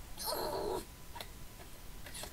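A short cat-like cartoon sound effect lasting about half a second, followed by a faint click about a second in.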